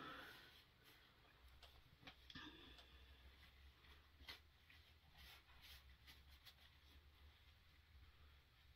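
Near silence with a few faint, scattered rustles and ticks of fabric as a drawstring threader stick is worked back through a shorts waistband.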